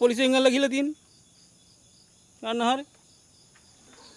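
Crickets chirring faintly and steadily in high-pitched bands. A voice speaks over them in the first second and again briefly past the middle.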